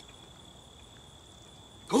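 Quiet woodland background with a faint, steady high-pitched tone fading out early on; a man's voice starts right at the end.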